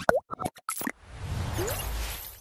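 Logo-animation sound effects: a quick run of short pops and plops, one with a springy pitch bend, in the first second. Then a whoosh with a low rumble swells up through the second half.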